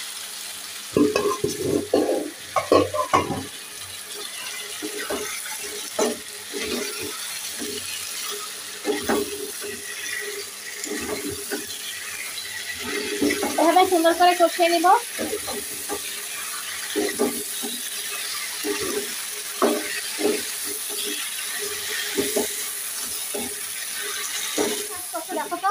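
A metal spatula stirring and scraping ridge gourd and potato pieces in a blackened karahi, in irregular strokes, over the steady sizzle of the vegetables frying in oil.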